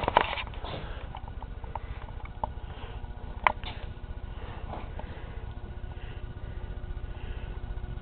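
Quiet room tone in a garage shop: a steady low rumble and faint hum, with a few small clicks and taps, one sharper click about three and a half seconds in.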